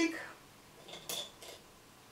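A few light clicks and clinks, about a second in, from a liquid-foundation bottle being handled.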